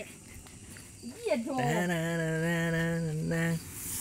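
A man's voice holding one long, steady drawn-out call for about two seconds, starting a little over a second in.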